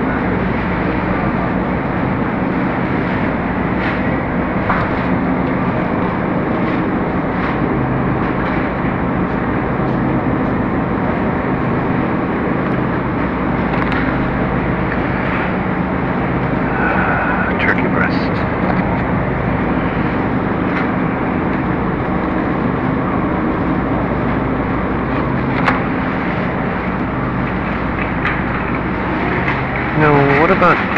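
Steady supermarket background: a constant low hum from refrigerated display cases under a continuous rushing noise. Faint voices can be heard in the distance.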